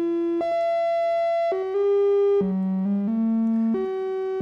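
Phenol analog synthesizer's oscillator playing a sequence of held notes that jump to a new pitch every half second to a second. The notes follow a Eurorack pattern generator's pitch voltage and track it in tune at one volt per octave.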